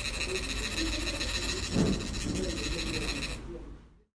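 Faint, indistinct voices over a steady room hiss, with one louder low sound just under two seconds in; the sound fades out near the end.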